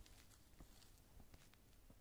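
Near silence: faint outdoor background with a few light scattered ticks and rustles.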